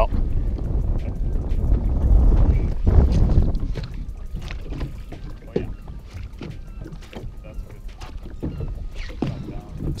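Wind rumbling on the microphone over waves slapping against a fishing boat's hull, heaviest in the first few seconds and easing after, with scattered light knocks.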